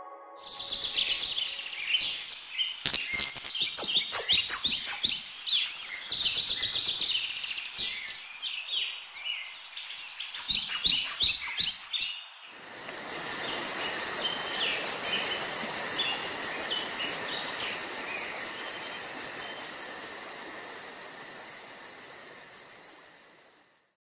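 Several birds chirping and calling in quick, overlapping bursts. About halfway through, a steady hiss with a high, even buzz takes over, with fainter chirps above it, and it fades out at the end.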